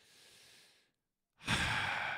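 A man sighing: a faint breath at the start, then a longer, louder breathy sigh from about one and a half seconds in.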